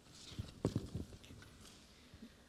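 A few faint, soft knocks and thumps: a small cluster about half a second in and another around one second.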